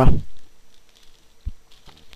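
A few faint clicks and rustles from a camcorder in a clear plastic bag being turned over in the hands, with one sharper click about one and a half seconds in.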